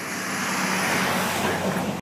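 Road traffic passing, the noise of a vehicle swelling louder about half a second in and holding.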